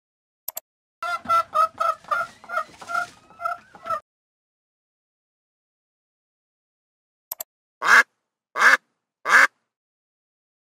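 Recorded animal calls played from a search page: after a faint click, a hen clucks about nine times in quick succession. After a pause and another click, a duck quacks three times, louder.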